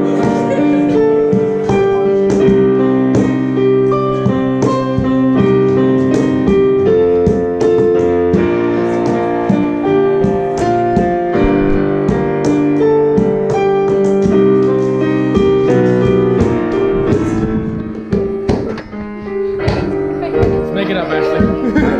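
Digital piano played with both hands: a flowing chordal piece with a moving melody line and many sharp note attacks, dipping briefly in loudness near the end.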